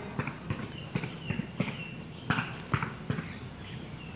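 A run of short, sharp knocks at uneven spacing, several a second at times.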